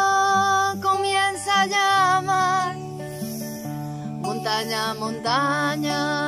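A woman singing a slow song in Spanish with long held notes, accompanied by a strummed acoustic guitar. Her voice breaks off for about a second and a half in the middle while the guitar plays on, then comes back in.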